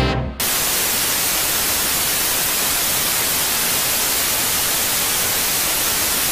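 Loud, steady white-noise static hiss, like a detuned television, cutting in abruptly about half a second in and holding even throughout.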